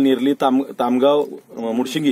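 A man speaking, with drawn-out syllables.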